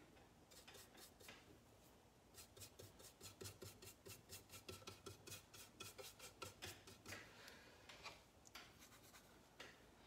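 Faint, quick strokes of a paintbrush loaded with thinned acrylic scrubbing across canvas, several strokes a second through the middle few seconds, then quieter near the end.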